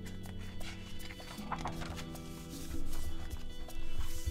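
Soft background music of held low notes that shift about halfway through, with light knocks and paper rustles as a large picture book's pages are turned and pressed flat by hand.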